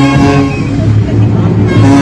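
Procession brass band playing held notes over a low bass line, with crowd voices.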